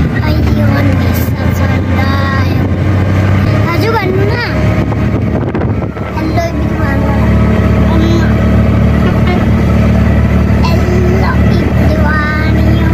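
Steady low drone of a vehicle's engine and road noise heard from inside the moving cabin, with a small child's voice chattering over it.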